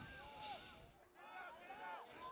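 Faint, distant voices shouting and calling out across an open rugby field during play.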